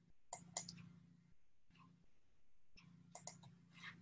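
Faint computer clicking over near-silent room tone: a quick cluster of clicks about a third of a second in, and another from about three seconds in.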